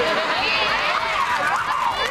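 A group of young people laughing and whooping together, many high voices overlapping.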